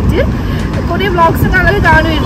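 A woman talking over the steady low rumble of passing road traffic.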